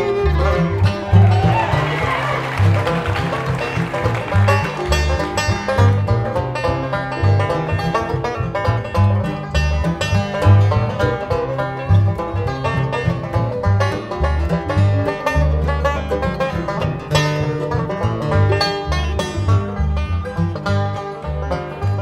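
Bluegrass band playing an instrumental break, banjo picking to the fore over acoustic guitar and a steady bass line, with no singing.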